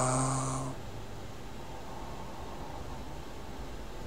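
A man's held hesitation sound ('euh'), one steady pitch fading out under a second in, then faint steady background hiss.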